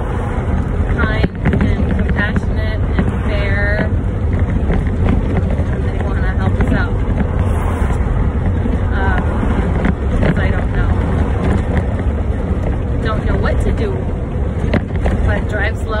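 Steady low rumble of a motorhome's engine and road noise, heard inside the cab while it is driven along the highway.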